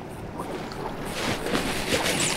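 Steady wind and water noise around a boat on open water, growing a little louder after about a second.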